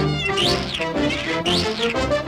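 Cartoon kitten meowing over cartoon orchestra music: two rising-and-falling cries about a second apart.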